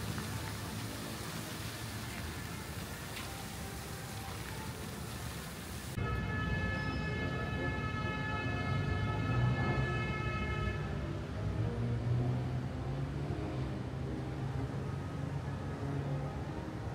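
Fountain jets spraying and splashing into a pond, a steady hiss of falling water. About six seconds in it cuts to street ambience: a low rumble of traffic with a sustained pitched tone of several even harmonics that holds for about five seconds and then stops.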